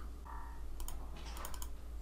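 Computer mouse clicks: two clicks just before the middle, then a quick run of three or four about half a second later.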